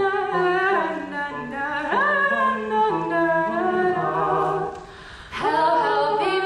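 Unaccompanied vocal trio, two women and a man, singing held harmonised chords, with a low sustained part under gliding upper voices. About five seconds in the voices drop away briefly, then all come back in together.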